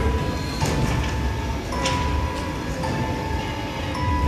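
Film soundtrack over a venue sound system: a steady low rumbling drone with a held high tone that switches between two close pitches about once a second, and a few faint clicks.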